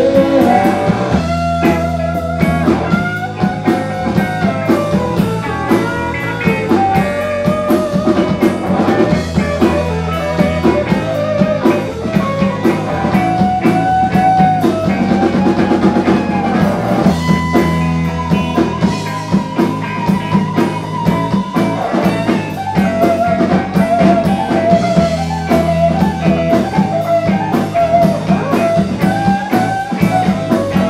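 Rock band playing live, with electric guitar, bass guitar and drum kit.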